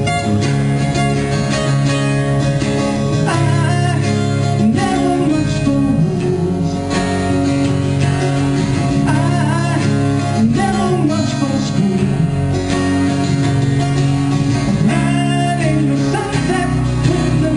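Live band music led by guitar, played as sustained chords, with a voice gliding over it in places.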